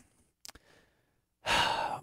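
A man's audible intake of breath into a close microphone, starting about one and a half seconds in, after a short pause with a faint click.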